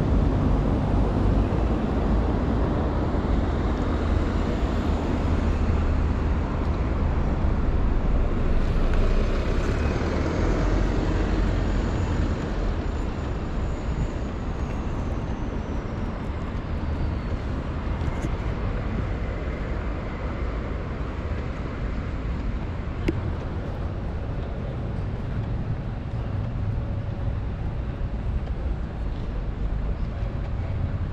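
Road traffic on a busy city road: a steady rumble of car engines and tyres, louder for the first dozen seconds and then easing off.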